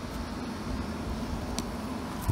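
Diesel-fired, compressed-air-atomized foundry burner running with a steady noise and a low hum. The owner suspects oil from the air line has partly clogged the burner nozzle, with air pressure running high.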